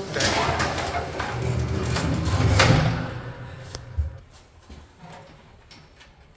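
Pull-down attic hatch and folding metal attic ladder being lowered: a noisy sliding and rumbling run for about three seconds, loudest just before it fades. A few light knocks and clicks follow as the ladder settles.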